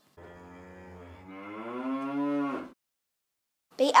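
A cow mooing: one long moo of about two and a half seconds that grows louder and dips in pitch as it ends.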